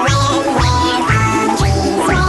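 Upbeat novelty dance music with a steady bass beat, about two beats a second, under a bright pitched lead line.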